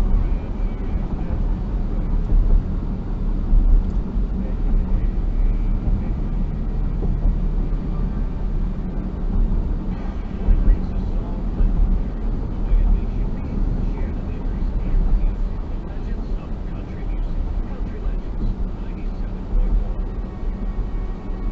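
Steady road and engine rumble heard inside a car's cabin as it drives at about 50–60 km/h on a concrete road, with tyre noise and a low drone throughout.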